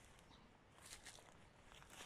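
Near silence: faint outdoor ambience, with a few soft brief rustling clicks about a second in and again near the end.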